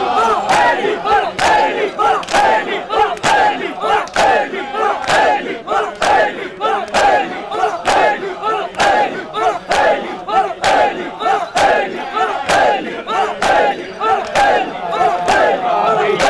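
Crowd of men performing matam: open-hand slaps on bare chests in a steady rhythm, about three every two seconds, with many voices shouting together on each beat.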